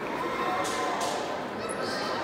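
Ambience of a large indoor hall: a steady wash of room noise with a faint murmur of distant voices.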